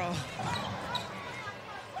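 Arena game sound from a basketball broadcast: a basketball bouncing on a hardwood court over the steady murmur of the crowd.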